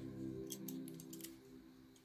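Background music fading out, with a quick series of sharp clicks and scrapes about half a second to a second in as a digital caliper's steel jaws are slid and set against the wall of a 3D-printed plastic cube.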